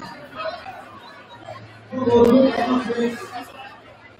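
Spectators chattering in a gymnasium, with a loud voice calling out in long held syllables about two seconds in.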